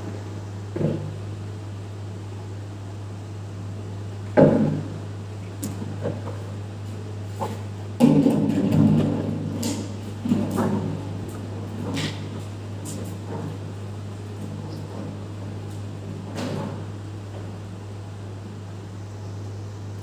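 Scattered knocks and clinks from a glass measuring jug and bottle being handled on a digital scale while glycerin is poured onto avocado pieces, with a busier run of clatter about eight seconds in. A steady low hum runs underneath.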